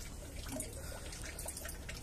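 Faint trickling and dripping of water, with a steady low rumble underneath.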